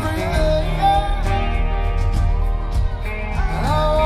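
A live rock band plays without a break: bass guitar and drums with cymbals under sustained guitar notes, some of which bend in pitch about three and a half seconds in.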